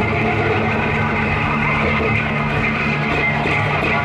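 Live band playing loud, driving rock music on acoustic guitar and banjo over a steady low end, an instrumental stretch without singing.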